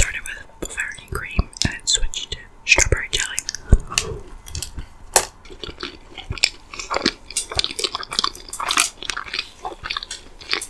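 Close-miked chewing of a soft jelly-filled donut, with wet mouth clicks and smacks throughout.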